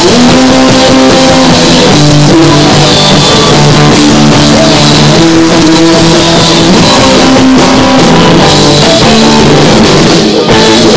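A live rock band playing loud, with electric guitars, electric bass and drum kit.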